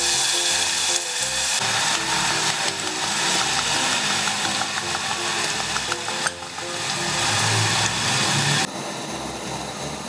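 Pork belly, garlic and soy sauce sizzling in a hot pot, with small spattering pops, under background music with a simple melody. The sizzle drops sharply near the end.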